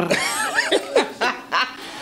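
Laughter: a person chuckling in a few short, breathy laughs that get quieter toward the end.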